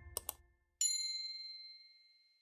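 Subscribe-button animation sound effects: two quick mouse clicks, then a bright bell-like ding that rings and fades over about a second and a half.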